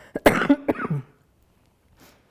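A woman coughing, a quick run of several coughs within about the first second.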